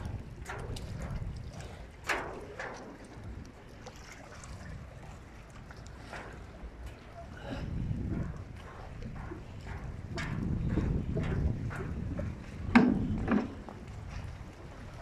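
Footsteps walking down a gangway, a short knock about every half second, with gusts of wind rumbling on the microphone. Two louder knocks near the end.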